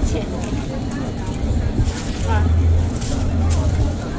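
Background chatter of people talking over a busy noise bed, with a steady low hum coming in a little past halfway.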